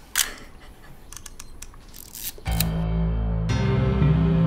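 A camera shutter clicks sharply, followed by a few lighter mechanical clicks. About two and a half seconds in, music begins with sustained low notes.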